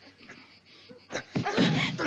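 A fistfight breaks out: a sharp hit just past a second in, then loud scuffling with strained, wordless grunts of effort.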